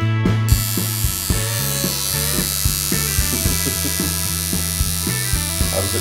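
An electric tattoo machine buzzing steadily, starting suddenly about half a second in, over rock music with a steady beat.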